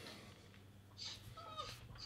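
Quiet room tone with a faint, short animal call falling in pitch, about a second and a half in.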